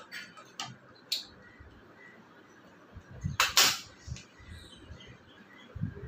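A pizza cutter wheel crunching through a toasted sandwich and scraping on a ceramic plate: a few short scrapes, then one louder, longer crunch about three and a half seconds in.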